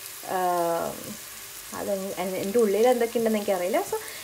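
Sliced onions and ground spices frying in a pot, a steady faint sizzle underneath talking.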